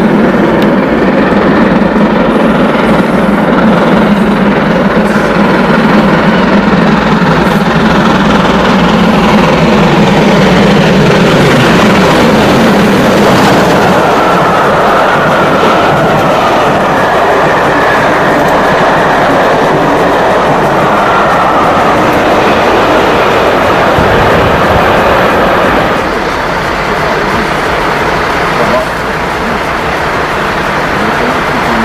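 Steam locomotive approaching and passing at speed with its train of coaches rolling by, with onlookers' voices; the sound eases a little near the end.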